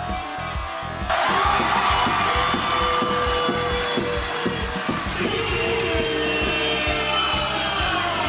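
Arena music with a steady drum beat. About a second in, the crowd breaks into loud cheering and shouting that carries on over the music.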